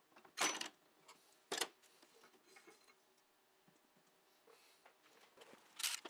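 Two short metallic clicks, about a second apart, as pliers work the intermediate shaft out of the front differential housing.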